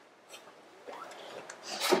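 Faint rubbing and rustling of a handheld microphone being handled in a pause between speech, ending in a short hiss just before a man's voice resumes.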